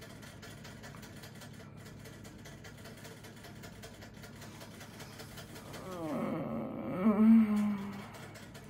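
Quiet room for about six seconds, then an off-camera drawn-out wailing cry with sliding pitch that swells to its loudest near the end and stops.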